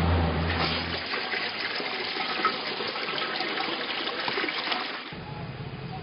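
Water running and splashing into a basin, a steady rush that fades about five seconds in. A low hum is heard in the first second and again near the end.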